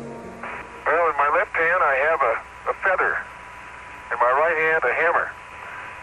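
Apollo astronaut's voice over the radio link from the Moon, thin and hissy, speaking in two stretches with a pause between.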